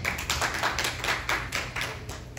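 Scattered hand clapping from a small church congregation, several people's claps overlapping unevenly and dying down near the end.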